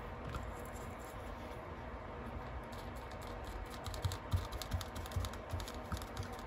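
Faint, irregular light taps and scratches of a paintbrush dabbing watercolour paint onto a leaf lying on paper, growing busier in the second half.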